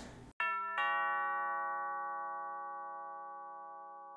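Doorbell-style two-note ding-dong chime: a higher note, then a lower one about a third of a second later, both ringing on and fading slowly.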